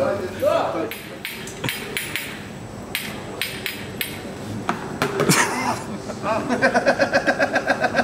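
People's voices with scattered knocks and clatter. Near the end comes a fast, even, pitched pulsing of about eight beats a second.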